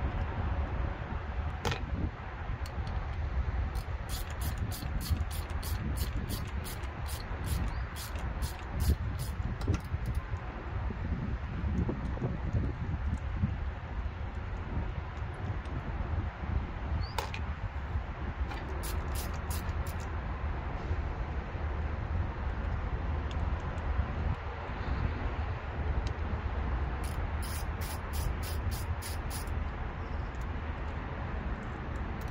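Socket ratchet wrench clicking as bolts are worked loose, in three runs of quick, evenly spaced clicks, the first lasting several seconds. A steady low rumble runs underneath.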